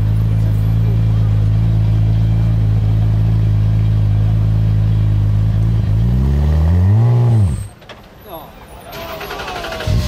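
The 3.5-litre twin-turbo V6 Ford EcoBoost engine of a Radical RXC Turbo running with a loud, steady drone, then revving up once and falling back about six to seven seconds in, after which the engine sound cuts off abruptly.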